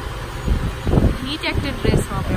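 Indistinct voices talking over a steady low background rumble.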